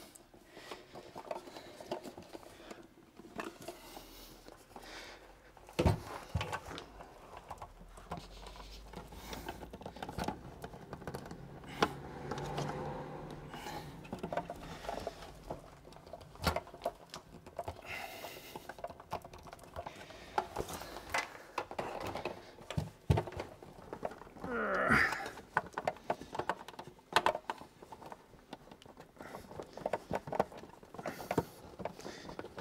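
Irregular clicks, taps and light knocks of hands working cables into a plastic consumer unit enclosure, with a few louder knocks.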